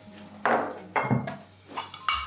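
Crockery clinking as a plate and saucer are handled and set down, with a few short knocks and clatters.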